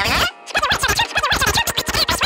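A rapid run of short electronic chirps and clicks, starting about half a second in, over a steady musical backing.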